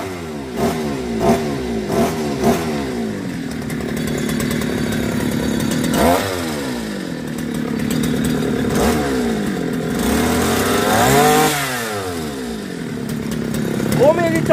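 Small Toyama two-stroke outboard motor running out of the water, revved with a bicycle-style throttle lever: a few quick blips, then several bigger climbs in pitch that drop back to idle, the longest near the end.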